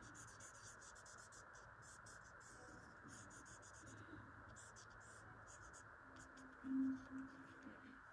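Faint scratching of a Sharpie Fine Point felt-tip marker on paper in many quick short strokes as it fills in black areas. A short low hum comes near the end.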